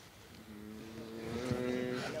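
A person's long, drawn-out voiced "mmm" in reply, faint and held steady from about half a second in, its pitch creeping up slightly.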